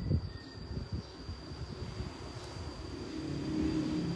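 Low background rumble with no speech, and a faint hum that grows louder over the last second.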